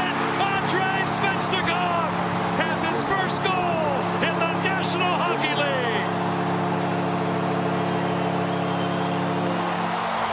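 Arena goal horn sounding one long sustained chord after a home goal, over a cheering crowd with whistles and whoops that die down after about six seconds.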